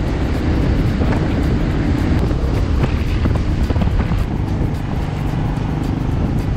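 Motorcycle being ridden at road speed: a steady, loud low rumble of engine and wind rush on the microphone.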